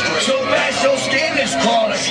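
A man's voice amplified through a concert PA with music behind it, heard from the crowd at a live hip-hop show.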